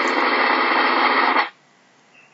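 Snare drum roll sound effect: a dense, steady roll lasting about a second and a half that cuts off suddenly.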